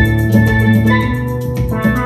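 Steelpan melody played with mallets on a pair of chrome steel pans, the notes ringing over a steady drum beat and a low bass line.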